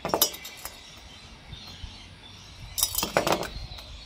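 Finned metal chainsaw cylinders clinking and knocking as they are handled and set down on a tabletop: a few sharp clinks at the start and another cluster about three seconds in.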